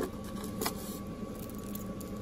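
Steady low background hum with a faint steady tone, and a single small metallic click about two-thirds of a second in as a jewelry chain and charm are handled.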